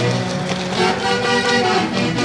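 Live band playing huaylarsh dance music, a melody of held notes with a horn-like sound typical of wind instruments.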